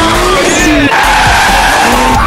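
Music playing, with a car's tyres screeching in a skid mixed over it.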